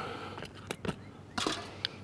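A few light, scattered clicks and taps of a small hand tool, a screwdriver, being handled at a sheet-metal furnace vent cap.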